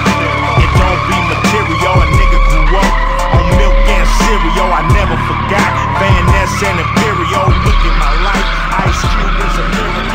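Tyres of drifting cars squealing in long, wavering screeches, heard under a hip hop music track with a heavy beat.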